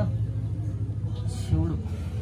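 A chanting voice over a steady low drone, with a short sung or spoken phrase near the end.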